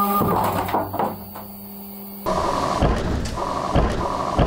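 CNC milling machine cutting metal: a steady pitched spindle whine with a high hiss. About two seconds in it changes abruptly to a noisier cutting and coolant-spray sound with several dull knocks.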